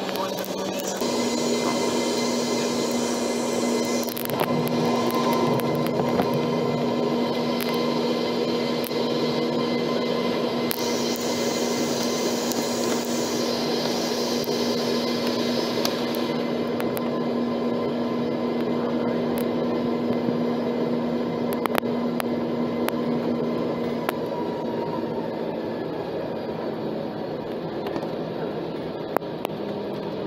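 Embraer ERJ 195's jet engines and cabin air heard from inside the cabin while the airliner taxis: a steady rushing noise with a steady hum. The hum stops about three-quarters of the way through, and the upper hiss falls away a little past halfway.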